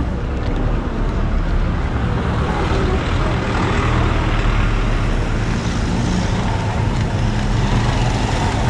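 Road traffic on a town street: cars and motorbikes passing close by, making a steady rumble of engine and tyre noise.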